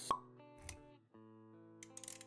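A sharp pop sound effect just after the start, over soft intro music with held notes. A short burst comes about two-thirds of a second in, and the music drops out briefly about a second in before resuming.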